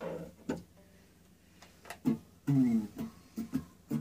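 Electric guitar, a Fender Mexican Standard Stratocaster on its middle pickup, played through a small First Act M2A-110 practice amp with a 7-inch speaker. A few sparse picked notes open the passage, then a louder note comes about two and a half seconds in, followed by quicker notes.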